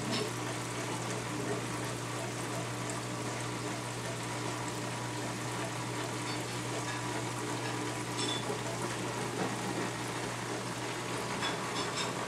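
Reef aquarium's water circulation running: a steady rush of moving water with a constant low pump hum underneath.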